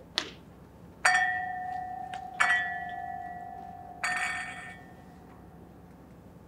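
Stemmed wine glasses clinking as they are gathered onto a tray: a light tap, then three clear strikes about a second and a half apart, each leaving a ringing glass tone that slowly fades.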